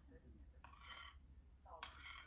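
Near silence with faint clinks of a spoon in a bowl during spoon-feeding, once a little past halfway and again near the end.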